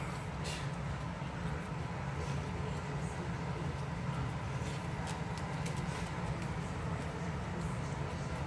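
A steady low rumble runs throughout. Over it come a few faint, scattered clicks and smacks from dogs licking and chewing cake out of cardboard boxes.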